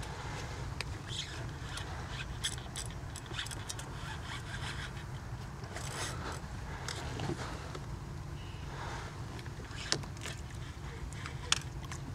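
Scattered short clicks, scrapes and rattles of fishing tackle and kayak gear over a steady low hum while a hooked fish is fought from a pedal-drive kayak.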